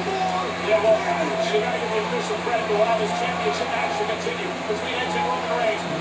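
Wrestling broadcast from a television: indistinct commentary voices throughout, with a steady low hum underneath.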